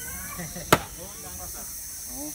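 A single sharp knock about a second in: a bamboo stake being struck to drive it into the earthen pond wall.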